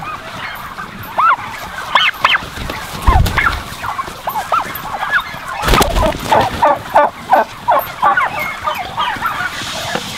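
Flock of domestic turkeys calling: many short, overlapping calls. A loud burst of wing flapping close by comes just before six seconds in.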